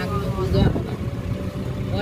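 Road rumble of a battery e-rickshaw on the move, heard from a passenger seat, with a heavier thud just over half a second in as it goes over a bump.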